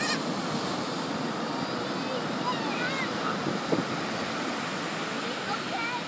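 Ocean surf washing and breaking in a steady rush, with faint high children's voices calling now and then over it.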